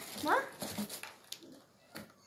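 A boy's short, rising questioning voice, then faint handling of tissue paper with one sharp click, falling almost silent near the end.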